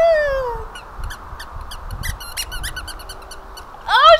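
A woman's drawn-out exclamation that falls away in the first moment, then a run of short, sharp squeaks and clicks from a plush dog toy's squeaker as it is squeezed and a puppy noses at it.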